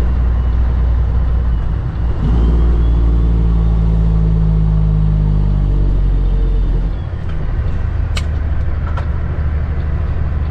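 Cummins ISX diesel engine of a 2008 Kenworth W900L heard from inside the cab while the truck is driven. The engine note gets louder about two seconds in, sinks slightly, then drops back about seven seconds in, as with a gear change while slowing. A sharp click comes about eight seconds in, with a fainter one soon after.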